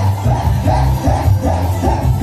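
Live cumbia band playing loud through the hall's sound system, with a heavy bass line and a steady repeating beat, heard from the dance floor.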